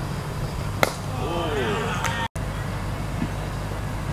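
Cricket bat striking the ball with a single sharp crack about a second in, followed by short shouted calls from players, over a steady low rumble of wind on the microphone.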